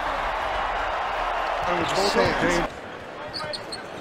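Arena crowd noise after a made basket, with a commentator's voice over it briefly. About two-thirds through it cuts off suddenly to a quieter court with a few short high sneaker squeaks.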